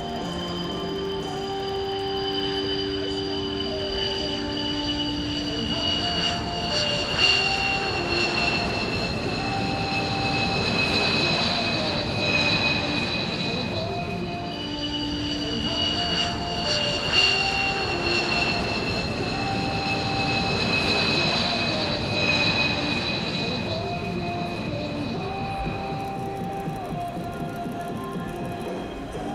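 High-pitched jet engine whine from F-15DJ fighters over a rushing jet roar, sliding slowly down in pitch as the jets roll out after landing. It happens twice, once per aircraft, with background music underneath.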